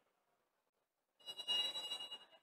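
Referee's whistle blown about a second in, a short pip and then a longer high, steady blast, signalling that the penalty kick may be taken.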